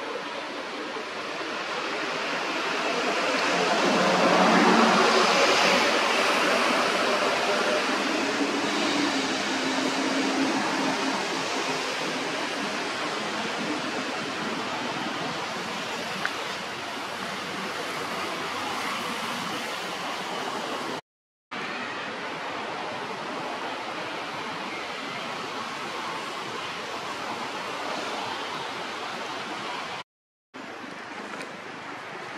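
Steady rushing outdoor noise, swelling to its loudest a few seconds in, then even again, with a brief half-second dropout about two-thirds of the way through.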